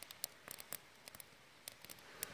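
Quiet pause: faint background hiss with a few scattered light clicks and rustles, typical of a hand-held camera being handled.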